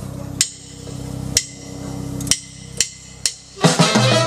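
Drumsticks clicked together to count in a big band: three sharp clicks about a second apart, then two quicker ones. The full band with brass comes in just before the end.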